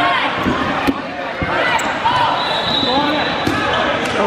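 Dodgeballs striking and bouncing on a hardwood gym floor, with a few sharp smacks, the clearest about a second and a second and a half in, over the general din of players in an echoing gym.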